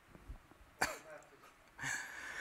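A man coughs once, sharply, about a second in. A breathy intake of breath follows near the end.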